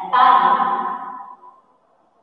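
A woman's voice speaking a single drawn-out word, lasting about a second and a half and fading out, then quiet.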